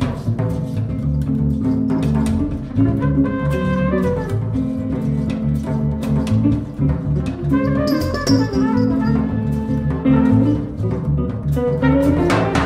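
Jazz band playing live: a prominent bass line and drum kit with cymbal strikes, with pitched melodic lines over them.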